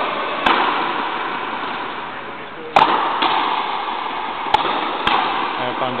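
Frontenis rally on an indoor fronton court: four sharp cracks of the rubber ball struck by rackets and hitting the walls, the loudest about three seconds in.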